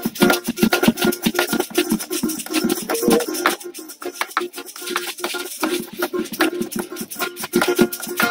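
Small folk ensemble playing instrumentally: a strummed cuatro, maracas shaken in a quick, steady rhythm, and a homemade drum of a plastic bucket beaten with sticks.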